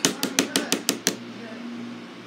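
A rapid run of about seven sharp knocks, about six a second, that stops a little after a second in, leaving a faint steady hum.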